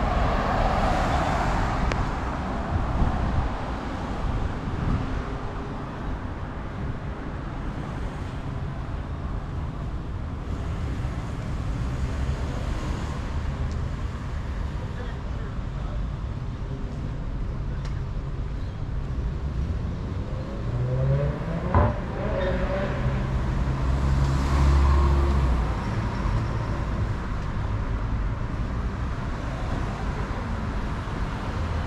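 Street traffic: cars passing along a busy road. One loud close pass comes at the start and another about two-thirds of the way through. Shortly before the second pass there is a brief rising engine note and a sharp click.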